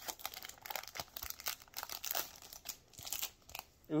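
Foil booster-pack wrapper crinkling and rustling as it is opened and handled, a run of irregular small crackles.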